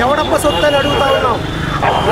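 A man speaking to the camera, over a steady low rumble of road traffic. A faint high steady tone sounds briefly in the middle.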